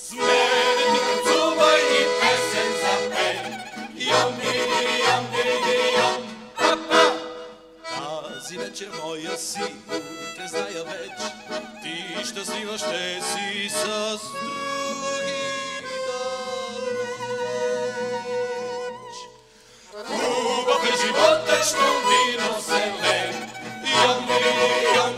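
A live song performance: voices singing to instrumental accompaniment for the first several seconds, then a quieter instrumental passage carrying a melody line. Full, louder singing comes back about twenty seconds in.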